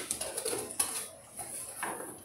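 A small cardboard box being handled and moved on a wooden table: rustling and scraping with two brief, louder knocks, about a second in and near the end.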